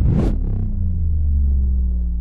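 Cinematic logo sound effect: a sudden rushing hit at the start, then a deep rumble with a few low tones that slowly fall in pitch.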